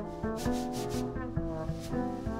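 Jazz piano trio playing: chords from a digital stage piano over plucked upright double bass, with the drum kit adding repeated soft rubbing swishes.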